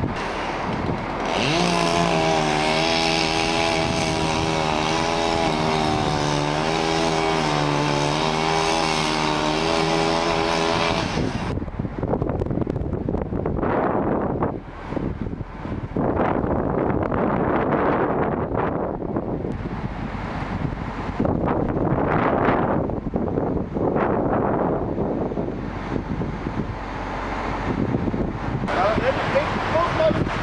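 A chainsaw revved up about a second in and held at high, steady speed for about ten seconds, stopping abruptly; after that, gusty storm wind rushing in irregular swells.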